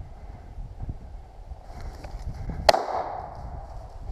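A single shotgun shot about two and a half seconds in that brings the bird down. Low rustling noise runs before it.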